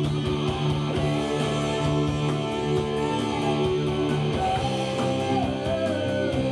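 Electric guitar playing chords with a live band, the notes sustained and ringing into one another.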